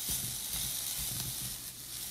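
Broccolini sizzling steadily in a hot pan with olive oil and a smoked-paprika seasoning blend.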